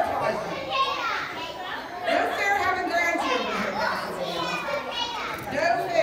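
A group of children's voices chattering and calling out over one another.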